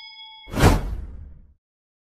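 A bell-like ding rings on and fades out, then about half a second in a loud whoosh sweeps downward and dies away within a second: the sound effects of an animated subscribe-and-bell button.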